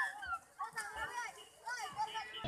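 Children's voices shouting and calling out at play, in several short high-pitched bursts with brief gaps between them.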